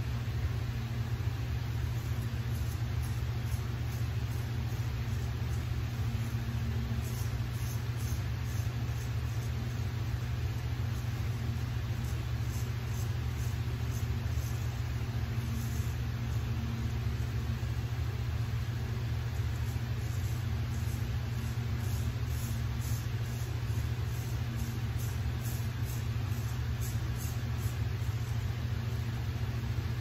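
Straight razor scraping through lathered stubble in short, faint strokes, over a steady low hum.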